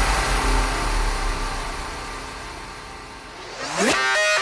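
Minimal techno breakdown without drums: a sustained noise wash over a low bass drone that fades down, then an upward-sweeping riser near the end leading into the next section.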